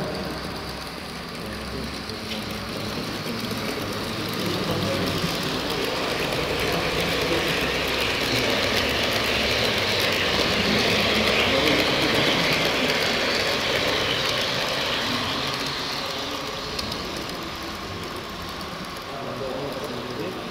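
H0-scale model electric locomotive and passenger coaches running along layout track: a steady rolling whir that swells to its loudest about halfway through as the train passes close, then fades as it moves away.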